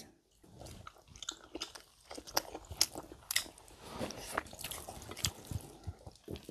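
Close-miked eating sounds: chewing and biting on shrimp and chicken wings, heard as an irregular string of short clicks and smacks.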